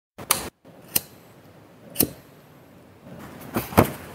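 A short noisy burst, then a series of sharp, irregularly spaced clicks or snaps, with two in quick succession near the end.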